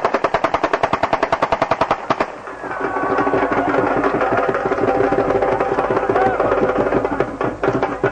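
A burst of rapid automatic gunfire, about eight shots a second, lasting about two seconds over drum-driven festive music. After it stops, the music carries on with a wavering melody.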